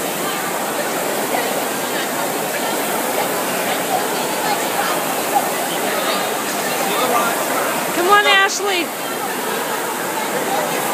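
Steady rush of many indoor rowing machines' fan flywheels spinning together, mixed with crowd chatter. About eight seconds in, a loud, wavering shout rises above it.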